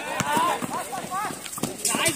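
Basketball dribbled on a concrete court, several hard bounces in a row, mixed with players shouting.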